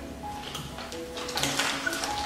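Soft background music with thin sustained notes. In the second half, short crinkles of a plastic snack bag being handled.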